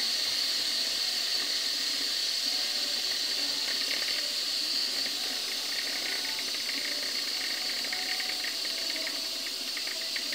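Cooker King Pro electric pressure cooker letting off steam: a steady hiss with a light crackle through the second half, slowly easing in level.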